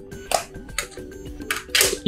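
Plastic snap-on back cover of a HOMTOM HT16 smartphone being pried off by hand: several sharp clicks and scrapes as its clips come loose, over soft background music.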